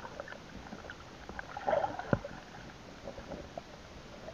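Muffled underwater sound from a camera submerged in a river: a steady low wash of moving water with scattered small clicks and taps. There is a louder bubbling cluster nearly two seconds in, followed at once by a sharp knock.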